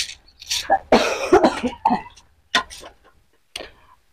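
A person coughing several short times, mixed with a little indistinct speech.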